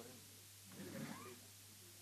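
Near-silent hall with a steady low hum; about a second in, a brief faint call whose pitch rises.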